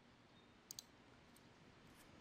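Two quick faint clicks of a computer mouse button, close together, about two-thirds of a second in, against near-silent room tone.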